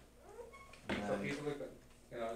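A man's voice: one short, drawn-out, indistinct syllable near the middle, in a small room with a low background hum.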